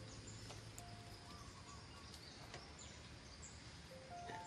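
Near silence: a faint steady background hiss with a few faint short tones at different pitches.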